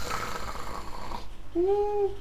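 A long, noisy breath blown out for just over a second, then a short held vocal sound near the end.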